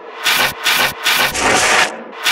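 A run of rasping scrapes, four strokes in about two seconds with short gaps between them.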